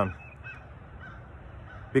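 Quiet outdoor background with a few faint, short bird calls about half a second in and again around a second.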